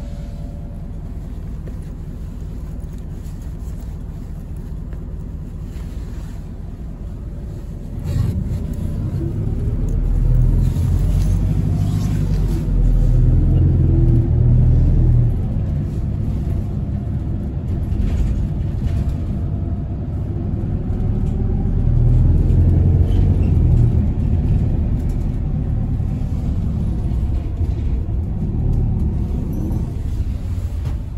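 Bus engine and road rumble heard from inside the passenger cabin: steady at first, then clearly louder from about eight seconds in as the bus accelerates, the engine note rising and falling in pitch.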